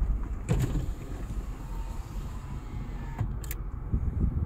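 Car driving on a dirt track, heard from inside the cabin: a steady low rumble of tyres and road noise. A knock comes about half a second in, and a sharp short click near the end.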